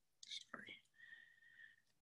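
Near silence, with a few faint, breathy whisper-like voice sounds and a brief faint held tone in the middle.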